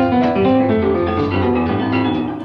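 A piano playing a run of notes over a steady bass, from an old band recording played back over a theatre's speakers.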